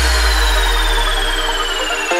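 Nightcore electronic dance music in a drumless breakdown: a held deep bass note fades out under sustained synth chords while a high sweep slowly falls in pitch.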